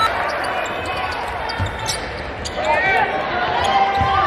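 A basketball bouncing on a hardwood court during play, with a low thump about a second and a half in, and voices in the gym around it.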